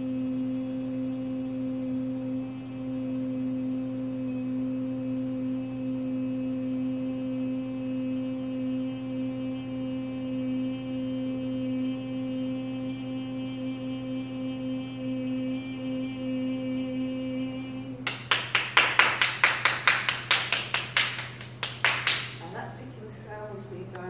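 A woman's voice toning one long, steady note as a sound-healing tone. About 18 seconds in it stops, and rapid hand claps follow, about five a second.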